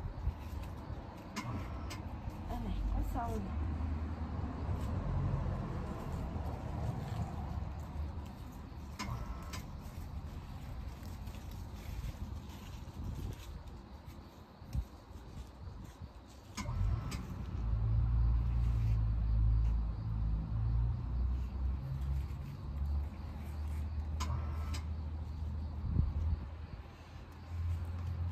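Leafy greens being picked by hand, with a few short, sharp snaps as stalks break off, spaced several seconds apart. Under them runs a low rumble that grows louder about halfway through.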